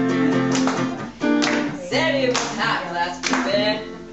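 Acoustic guitar strumming chords, with a voice singing over it from about two seconds in.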